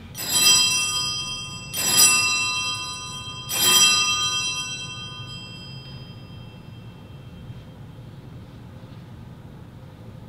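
Wall-mounted sacristy bell, a cluster of three small brass bells, rung three times about a second and a half apart, each ring fading over a few seconds. It signals the priest entering the sanctuary.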